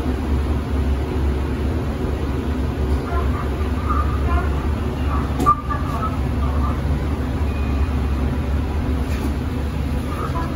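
Mitsubishi machine-room-less traction lift car running down one floor, a steady low rumble, with a sharp click about five and a half seconds in as it arrives.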